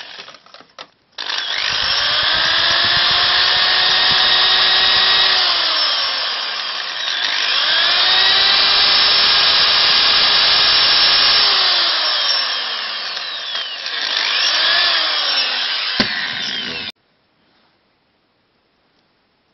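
Kraft Tech corded electric drill drilling into a thin wooden stick. The motor whines up to speed, holds steady, then winds down, and does this twice in long runs. A short third burst comes near the end before it stops abruptly.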